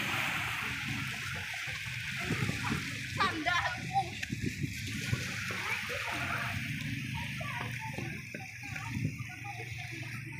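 Small waves breaking and washing up on a sandy shore, a steady rush of surf.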